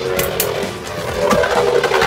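Background music with a steady held tone, over two Beyblade Burst spinning tops battling in a plastic stadium: a few sharp clacks as they collide, the clearest about half a second in and again about a second and a half in.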